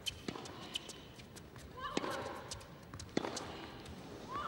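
Tennis ball struck back and forth in a baseline rally, a racket hit about every 1.3 s. One hit about 2 s in comes with a player's short rising-and-falling grunt.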